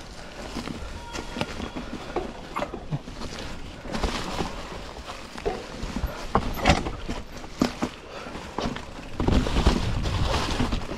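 Enduro mountain bike descending a rough forest trail: tyres rolling over dry leaves, stones and roots, with irregular knocks and rattles from the bike over the bumps. A louder low rumble near the end as the bike picks up speed.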